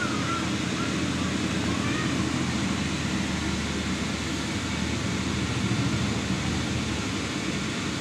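Steady drone of an inflatable bounce house's electric blower fan running continuously to keep it inflated.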